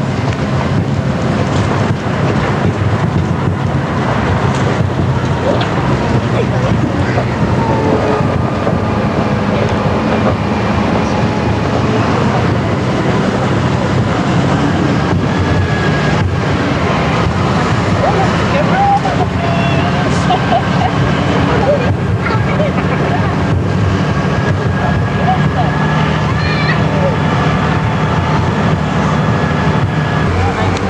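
A vehicle engine running with a steady low drone, heard from the passenger trailer riding close behind it, with wind on the microphone. Faint voices come and go among the passengers.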